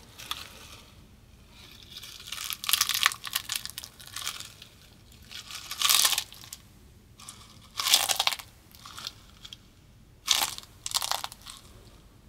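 Monkey nuts (peanuts in their shells) being crushed and cracked between the hands close to a microphone: a string of sharp, crackly crunches in separate bursts a second or two apart.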